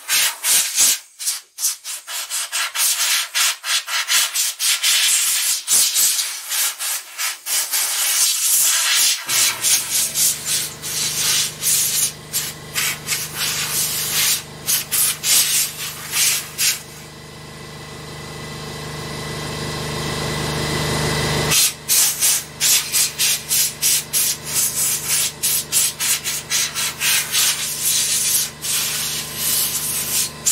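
Fast, repeated scraping and rubbing strokes of a hand tool worked over the plastic chassis of a stripped laptop base. A steady low hum joins about ten seconds in and cuts off suddenly about twenty-one seconds in. Over its last few seconds the strokes pause and a smoother, rising noise takes their place.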